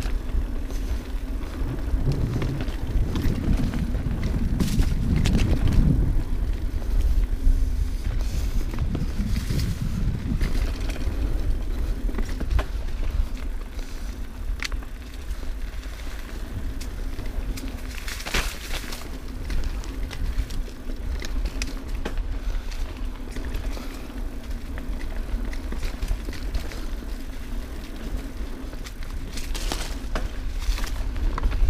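A mountain bike ridden fast down a dirt singletrack, heard from a camera on the bike or rider: a steady rumble of tyres rolling and wind on the microphone, with rattles and clicks from the bike over roots and bumps. It is busiest in the first ten seconds, with another run of sharp clicks about two-thirds of the way through.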